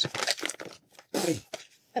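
Plastic pouch of yeast hulls crinkling as it is handled and opened at the top, with a short voice sound just after a second in.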